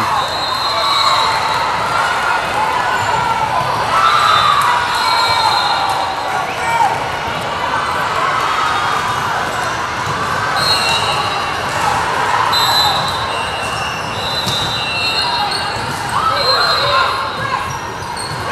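Gymnasium ambience during a volleyball match: spectators and players chattering in a large echoing hall, with short high sneaker squeaks on the hardwood court and a volleyball being bounced.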